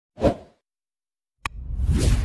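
Sound effects of an animated subscribe-button intro: a short whoosh, then a single sharp click about a second and a half in, followed by a louder whoosh that builds to the end.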